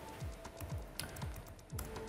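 Quiet background music with a steady low beat, about three to four beats a second, and light ticking over it.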